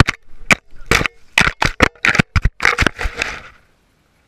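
A camera tumbling and bouncing over the ground before coming to rest in leaf litter: a quick string of about ten sharp knocks and cracks that stops about three and a half seconds in.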